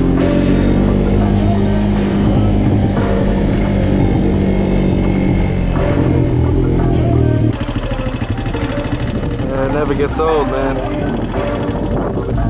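Music track with vocals playing over the sound of ATV engines running. The engine sound and the overall level drop a little over halfway through.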